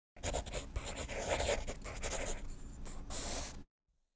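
Pen scratching across paper in a run of quick, uneven strokes, as a handwritten signature is written out. It stops suddenly just before the end.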